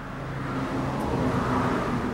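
A motor vehicle passing close by: a steady engine hum and tyre noise growing louder over the first second and a half.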